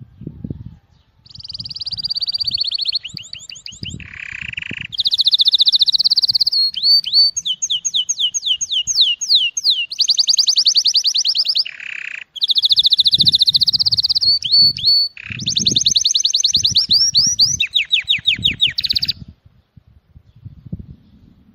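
Male canary singing an excited courtship song: a long, loud run of rapid trills and rolls that switches to a new repeated phrase every second or two, with a brief break about twelve seconds in.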